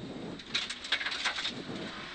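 Mercedes 500SLC rally car's V8 engine heard from inside the cabin, its pitch rising and falling as the driver works through a tight right-left. A rapid run of clicks and crackles lasts about a second in the middle.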